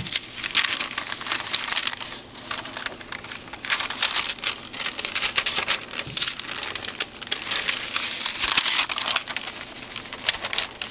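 A sheet of paper crinkling and rustling as it is folded up around piles of ground spices and dried herbs to gather them together, with a quieter stretch around the third second.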